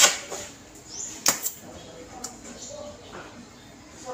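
Three sharp metal taps on the sheet-metal body of a Mitsubishi L300 van at its rusted rear wheel arch during body repair. The first tap, at the very start, is the loudest.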